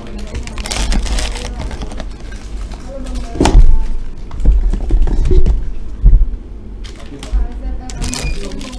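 Plastic blind-box wrappers rustling and crinkling as they are torn open by hand, with a sharp click and several dull knocks against the table.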